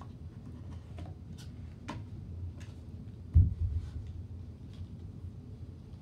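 Scattered light clicks and taps from a smartphone box and small items being handled on carpet, with one dull thump about three and a half seconds in.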